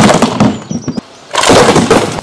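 Homemade Gatling slingshot firing rapid shots: two loud bursts of fast clattering, separated by a short pause about a second in.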